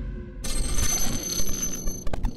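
Logo sting sound effect: a bright, ringing chime-like shimmer comes in suddenly about half a second in over a low music bed, fading toward the end.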